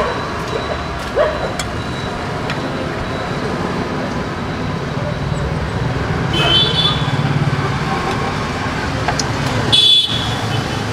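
Street traffic: the steady hum of passing vehicle engines, with short high-pitched beeps about six and a half seconds in and again near the end.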